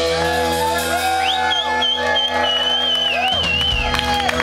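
A live punk rock band's final chord ringing out through the guitar and bass amplifiers, with the crowd shouting and whooping over it. A high wavering whistle joins in about a second in.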